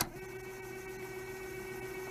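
A faint steady hum, one low tone with a few higher tones held above it.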